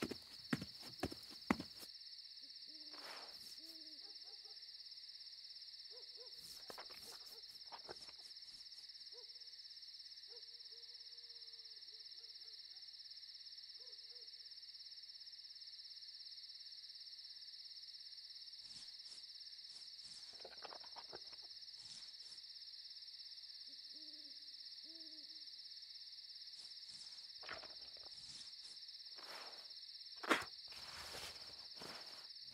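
Faint night ambience: an owl hooting now and then, in short low calls, over a steady high-pitched drone, with a few soft clicks scattered through.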